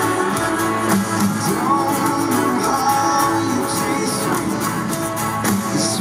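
Live band music, with an acoustic guitar strumming and a voice singing over it.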